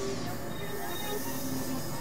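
Experimental electronic synthesizer music: a set of sustained drone tones held over a dense, noisy texture.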